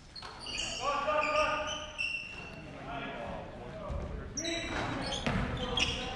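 Live basketball play in a gym: sneakers squeaking sharply on the hardwood court, several ball bounces and knocks in the second half, and players calling out.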